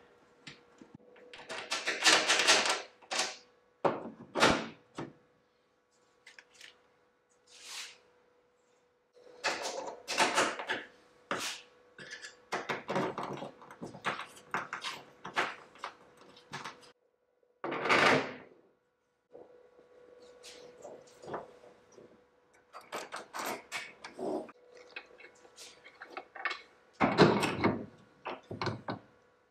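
Irregular knocks, clicks and rustles of hands fitting a RAM mount to the side of an aluminium boat with stainless-steel bolts and nuts, with a louder knock near the end. A faint steady hum runs underneath.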